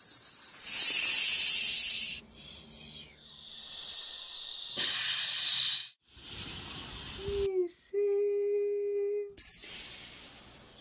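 Steam train sounds: several loud bursts of steam hissing, then the train whistle blows, a short note bending down followed by a longer steady note.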